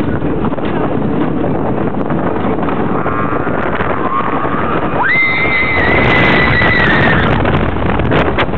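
Wooden roller coaster train running fast along the track, with a steady rumble and wind on the microphone. About five seconds in, a rider lets out one long high scream lasting about two seconds, after shorter rising cries.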